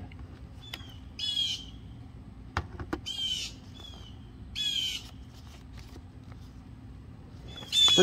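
A bird giving harsh, scolding alarm calls, four short calls spaced about one and a half to three seconds apart, the kind of calls birds make at cats on the prowl. A single sharp click falls between the second and third calls.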